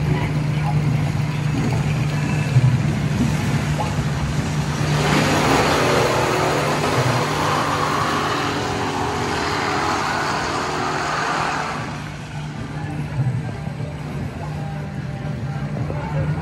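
Small amusement-park ride truck running along its guide track, with a steady low motor hum and running noise. A louder, mixed noisy stretch comes in about five seconds in and fades out about twelve seconds in.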